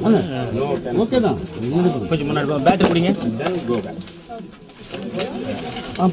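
A man's voice talking steadily in low tones, with a short lull about four seconds in.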